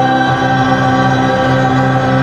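Mixed SATB church choir singing in harmony, holding a long sustained chord on the closing words "the name of the Lord" at the end of the song.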